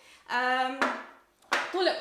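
A woman's voice: a short vocal sound held at one steady pitch, a brief pause, then speech resumes about one and a half seconds in.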